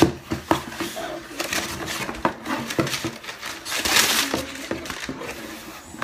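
Scissors cutting and scraping through packing tape on a cardboard shipping box, with repeated knocks and clicks on the cardboard. About four seconds in there is a louder rasp of tape and cardboard as the box is opened.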